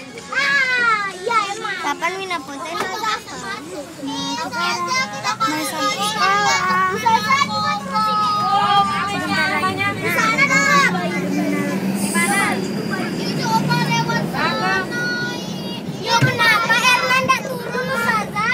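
A group of children's excited voices, talking over one another with high-pitched shouts, inside a moving vehicle, with the engine's low, steady hum underneath.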